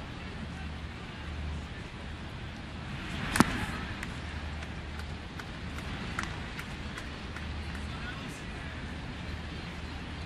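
Steady ballpark crowd murmur, with one sharp pop about three and a half seconds in as an 88 mph pitch smacks into the catcher's mitt for a strike.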